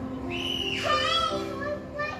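Background music with steady held notes. A child's high-pitched voice rises over it about half a second in and falls away by about a second and a half.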